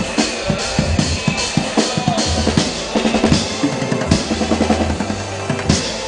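Fast, steady drumming on a drum kit built partly from plastic buckets, with snare, bass drum and cymbal hits, over a low sustained bass note at times.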